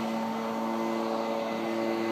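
Steady hum of a running machine, holding one constant pitch.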